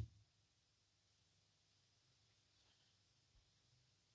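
Near silence: faint room tone with a very low hum.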